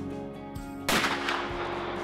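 A single shot from a scoped revolver about a second in: one sharp crack whose echo dies away over about a second.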